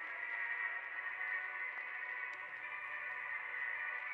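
Quiet music made of steady, held tones, the slow opening of a symphonic death metal song played back through the reaction video.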